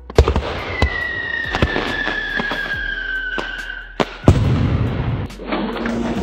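AI-generated fireworks sound effects from Meta Movie Gen: a sharp bang and dense crackling, with a whistle that falls slowly in pitch for about three seconds, then a second loud bang about four seconds in followed by more crackle. Near the end it gives way to steady instrumental music.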